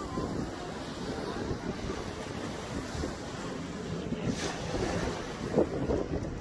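Steady wind buffeting the microphone, with the rush of small waves breaking on a sandy shore behind it.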